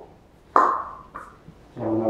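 A person's voice: a short, breathy exclamation about half a second in, then speech starting near the end.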